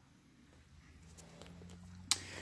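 Near silence: faint shop room tone, with a low hum and a few faint ticks coming in during the second half.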